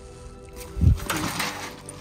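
A backpack handled and pulled across the metal mesh platform of a wooden ladder stile: a low thump a little under a second in, then rustling and scraping of the bag's fabric and straps. Background music plays throughout.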